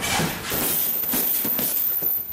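Gloved punches hitting a hanging leather heavy bag, several hits in quick succession as an uppercut-and-hook combination is thrown.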